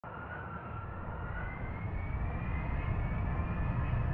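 Jet airliner in flight heard from inside the cabin: a steady low roar of the turbofan engines and airflow, with a faint whine slowly rising in pitch and the level creeping up slightly.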